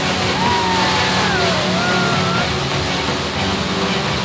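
Loud rushing whoosh of a magic-effect sound, with a high wavering wail that dips and rises during the first half, over low dramatic background music.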